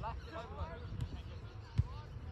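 Soccer ball being kicked on grass in a passing drill: two dull thumps, about a second in and a louder one near the end.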